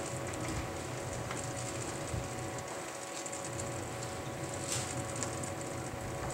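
Bible pages being leafed through, a soft rustling with light scattered clicks over a steady room hum.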